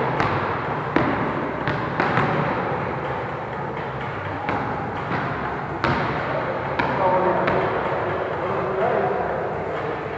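A volleyball bouncing a few times on a wooden gym floor, with sharp thuds about a second in, two seconds in and just before six seconds, each echoing in the large hall. Players talk in the background.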